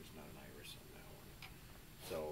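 A few faint, light ticks, heard over low room tone with soft, indistinct voices.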